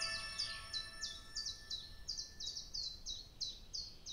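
The last notes of a new-age piece ringing out and fading, under a bird's rapid series of short chirps, each a quick falling note, several a second.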